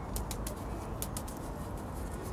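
Light tapping and patting on a small plastic plant pot and the gritty cactus compost in it, to settle the soil down the sides. It comes as a run of small, irregular clicks over a low steady rumble.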